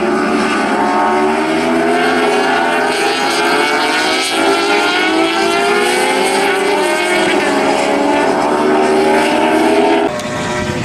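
A pack of several 600 cc supersport racing motorcycles passing at racing speed. Their high-revving engine notes overlap, each rising and falling in pitch as the bikes drive through the corner.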